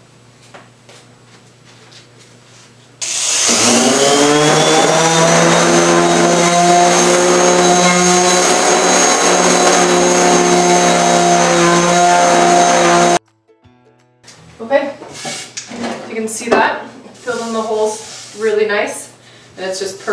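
Electric palm sander with 120-grit paper on the wood of an old hutch, smoothing dried wood filler: it starts about three seconds in with a short rising whine, runs steadily for about ten seconds, then cuts off suddenly.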